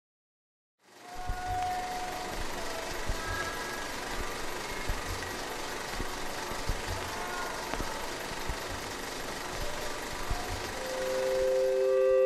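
Steady crackling hiss with scattered soft low thumps and clicks, like the surface noise of an old recording, starting about a second in. Near the end two held musical notes fade in.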